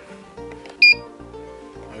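Background music with a steady bass line, and about a second in a single short, sharp electronic beep, the loudest sound here.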